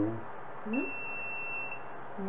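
A steady, high electronic beep starts just under a second in and holds for about a second. It repeats after a pause of about a second.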